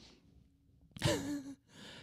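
A man's short breathy vocal sound, a sigh-like hum at a steady pitch, about a second in, between short stretches of quiet.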